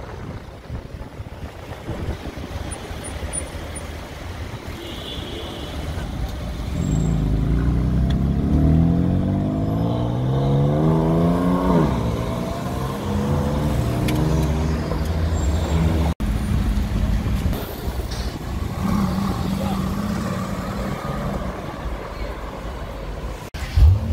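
A car engine accelerating hard past the camera in city traffic: its pitch climbs for about five seconds, drops abruptly, then runs on at a lower, steadier pitch.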